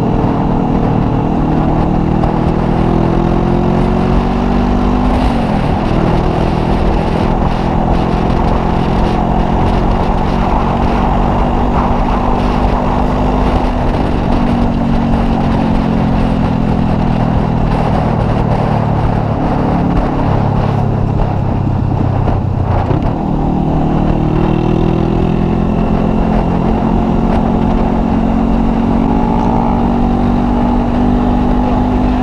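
Honda CBR500R parallel-twin motorcycle engine running at road speed, its note slowly rising and falling with the throttle. The note drops sharply and climbs again twice, about five seconds in and again past the twenty-second mark. A steady wind rush runs underneath.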